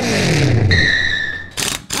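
A loud rushing whoosh with an engine-like pitch falling away, then a steady high ringing tone, ending in two short hissing bursts.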